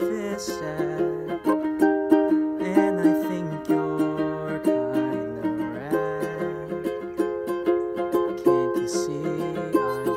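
Ukulele strummed in a steady, even rhythm, playing the chords of a pop song.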